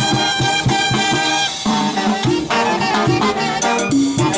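Live brass band playing a Latin dance tune: trumpets and other horns carry the melody over a steady beat of congas and timbales.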